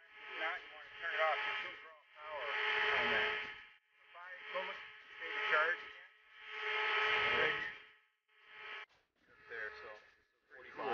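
Indistinct speech: a voice talking in short phrases with brief pauses, thin-sounding, like a voice over a radio.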